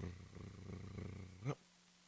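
A man imitating a drum roll with his mouth, a fast rolled-tongue trill that ends with a short rising flourish about a second and a half in.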